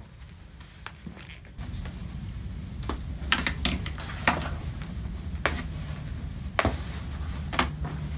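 Handling of a Mountain Buggy Urban Jungle stroller's frame and hood: about eight sharp clicks and knocks at irregular intervals, over a low rumble of handling noise that starts a second or two in.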